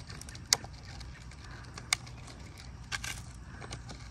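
Sharp plastic clicks from a Stihl AutoCut 25 string trimmer head being put back together after reloading its line. There are two single clicks, then a few quick ones near the end.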